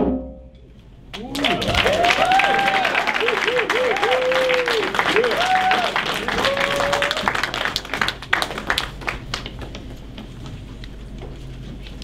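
Audience applauding, with whoops and cheering voices over the clapping. It starts about a second in and dies away to a low murmur over the last few seconds.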